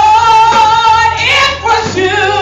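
Church choir singing gospel, led by a woman's voice holding a long note with vibrato, other voices joining above it about halfway through.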